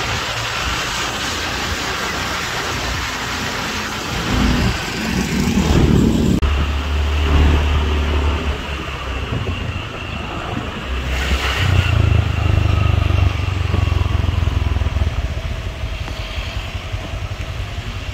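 Riding on a motor scooter: its small engine running steadily under road and wind noise, with the low rumble swelling now and then.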